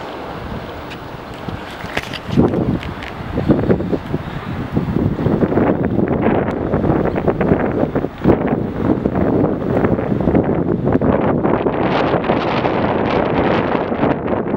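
Wind buffeting the camera microphone, rising and falling in gusts, with a few short knocks about two to three seconds in.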